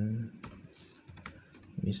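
Typing on a computer keyboard: a short run of quiet key clicks as a word is typed. A man's voice trails off at the start and comes in again near the end.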